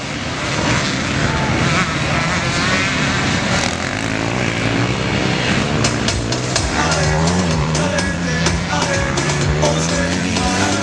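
Motocross bikes racing past close by on a dirt track, their engines revving up and down with the throttle. One bike passes very near about midway, and another near the end.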